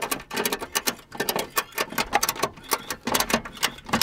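Ratchet strap being cranked tight, its ratchet buckle giving a rapid, uneven series of clicks, cinching a broken car suspension mounting together as a temporary fix.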